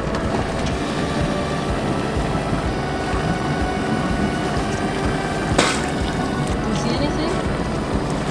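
Background music with held notes over a steady low rumble, and one sharp click about five and a half seconds in.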